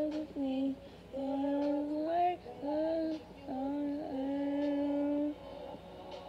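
A female voice singing a slow pop ballad solo, in several held notes with small slides between them and a short breath break about a second in and near the end.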